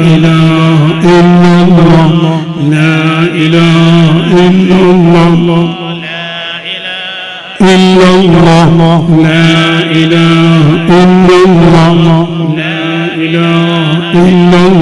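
Voices chanting Islamic dhikr, a repeated devotional phrase sung on long held notes. The chant drops away for a moment about six seconds in, then comes back suddenly at full strength.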